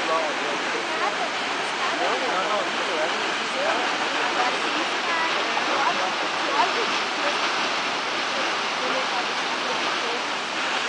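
Steady rushing of the Caracol Falls, a tall waterfall plunging off a cliff into a forested valley, with indistinct voices murmuring over it.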